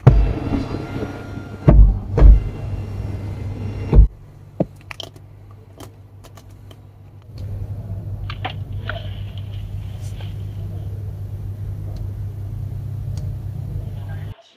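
Li Xiang One's power sunroof assembly running for about four seconds after its overhead switch is pressed: a motor whine with several heavy clunks, ending in a thump as it stops. A few seconds later a steady low hum runs for about seven seconds and then cuts off.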